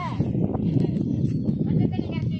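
Indistinct voices of several people over a steady low background rumble, with a short wavering call right at the start.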